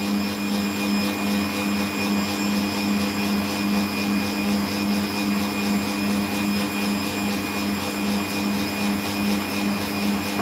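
Bosch stand mixer's motor running steadily at speed, its whisk beating egg whites and sugar into meringue in a stainless steel bowl. A constant low hum with a slight regular pulse.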